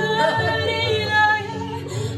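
A woman singing a song to her own strummed guitar accompaniment.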